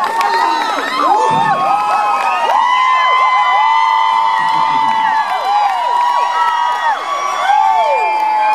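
Concert audience cheering and shrieking, many voices at once.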